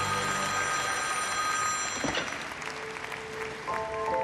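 Figure-skating program music ending on held notes while an arena crowd applauds. A new chiming melody begins near the end.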